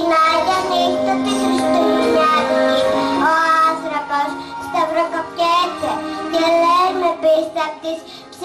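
A young girl singing into a microphone over musical accompaniment; her singing comes in right at the start.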